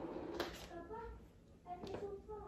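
Quiet room with a faint, low voice and two soft taps, one about half a second in and one near the end.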